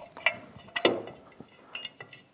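CVT driven clutch being picked up and handled on a wooden workbench: a few light metallic clicks and knocks from its sheaves and parts, the loudest about a second in.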